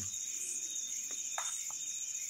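Crickets trilling in one steady, unbroken high-pitched tone, with a couple of faint short clicks.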